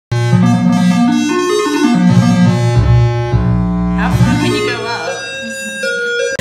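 Homemade theremin: laptop oscillator software played by hands moving over infrared sensors, giving sustained electronic tones that jump up and down in pitch in steps over a low bass tone.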